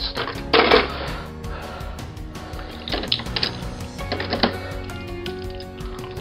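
Metal diecast toy cars clinking and rattling against each other as they are handled in a box, a few short clatters over quiet background music.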